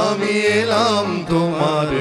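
Male voice singing a sliding, wavering melodic line without clear words, over steady held keyboard notes.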